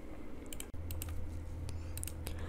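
A few faint, light clicks scattered irregularly over a quiet low hum, which comes in about three quarters of a second in.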